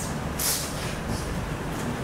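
Room tone of a talk venue: a steady low rumble through the microphone, with a short hiss about half a second in.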